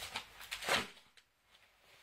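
Handling noise from a small plastic dash cam held in the hands: a sharp click at the start, then short rubbing and rustling sounds, the loudest a little under a second in.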